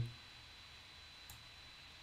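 A single faint computer mouse click about a second in, over quiet room hiss with a thin, steady high-pitched whine.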